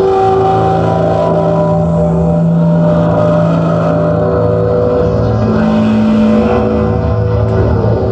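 Metal band playing live: loud distorted electric guitars and bass holding sustained low chords, which shift a couple of times, over drums and cymbals.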